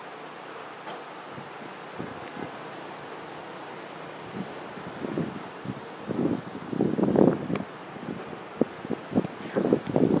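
Wind blowing across the microphone as a steady rush, joined about halfway through by irregular bursts of buffeting noise that come thickest and loudest in the second half.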